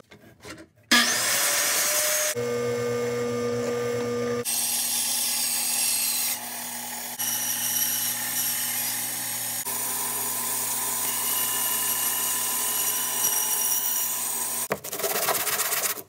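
Power tool running and cutting wood as a pine disc is turned by hand on a circle-cutting jig. It starts about a second in and stops shortly before the end, with several abrupt jumps where stretches are spliced together.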